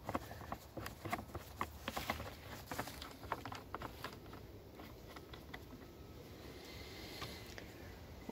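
Light, irregular clicks and taps of a hand tool and plastic engine-bay parts being handled, thickest in the first few seconds and thinning out after.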